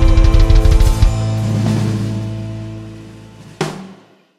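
Live rock band with drum kit ending a song: a rapid drum fill for about a second, then the final chord rings and fades over a few seconds, with one last sharp hit just before it dies away.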